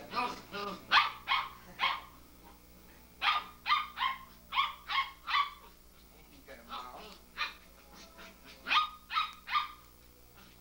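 Puppy yipping: short, high-pitched yaps in quick runs of three to six, with short pauses between the runs.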